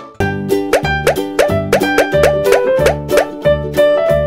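Bouncy children's background music with a steady bass beat and short notes that slide in pitch. It breaks off briefly at the very start and picks up again with a new passage.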